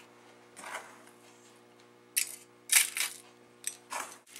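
Metal measuring spoon clinking and scraping against a stainless steel bowl and a metal muffin pan as crushed wafer crumbs are scooped out: a handful of separate short clinks, the loudest a little after two seconds in and near three seconds.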